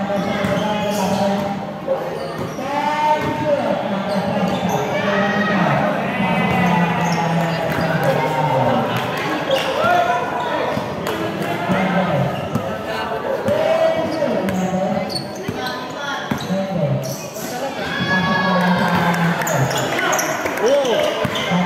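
Basketball dribbled and bouncing on a painted concrete court, with voices talking and calling out almost throughout.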